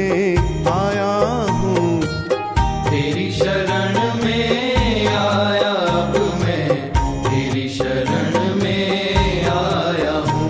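Hindi devotional bhajan music with a steady percussion beat, here in a passage where no words are heard.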